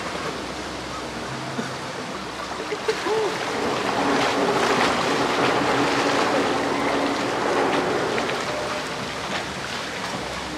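Swimming-pool water splashing and lapping close to the microphone as people swim, swelling louder from about four to eight seconds in.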